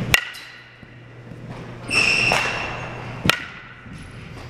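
A softball bat hitting softballs twice, about three seconds apart, each contact a sharp crack with a short metallic ring. Between the hits, about two seconds in, a louder and longer ringing knock.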